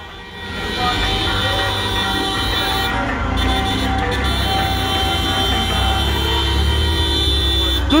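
Several vehicle horns honking together in long, held blasts over the low rumble of passing car engines, starting about half a second in.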